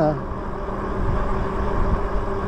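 Wind rushing over the microphone and tyre rumble from an e-bike riding along at a steady speed, with a steady low hum from its motor.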